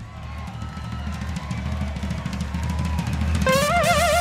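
Live rock band build-up: drums rolling over a held low bass note, swelling steadily louder. Near the end a high, wavering note with wide vibrato comes in on top.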